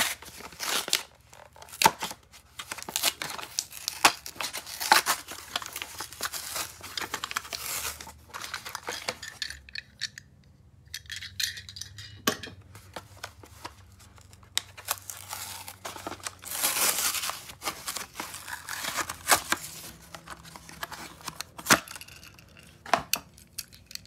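Cardboard backing of a toy blister pack being torn open, with packaging rustling, in a long run of irregular rips and a short lull near the middle.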